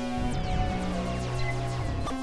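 Experimental electronic music from Novation Supernova II and Korg microKORG XL synthesizers: held droning chords that jump to new pitches every half second to a second, with many quick falling glides sweeping down over them.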